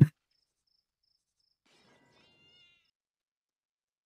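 Near silence, with a faint high chirp repeating about every 0.4 s and a brief faint high-pitched call a little after two seconds in; both stop at about three seconds.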